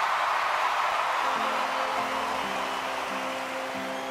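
Large arena audience applauding, the clapping slowly dying down. Music comes in under it about a second and a half in, held low notes that step to a new pitch every half second or so.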